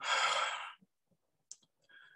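A man's audible breath, lasting under a second, followed by a brief faint click about a second and a half in.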